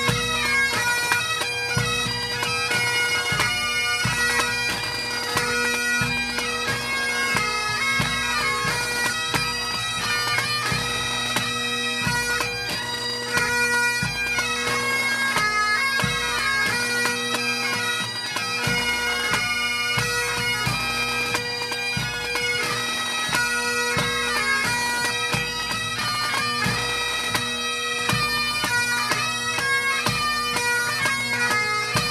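Pipe band playing: Great Highland bagpipes' chanter melody over steady, unbroken drones, accompanied by snare drum and bass drum strokes.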